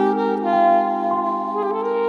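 Slow romantic instrumental music: a saxophone plays held melody notes with vibrato over sustained background chords.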